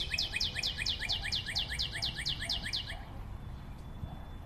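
Animation sound effect: a rapid, even run of high, downward-sliding chirps, about eight a second, that stops about three seconds in.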